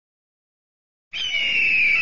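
An eagle's screech sound effect: one long, loud call that starts suddenly about a second in and falls slightly in pitch.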